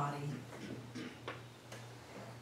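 A soft voice finishing a word, then a few faint, unevenly spaced ticks over a low steady hum.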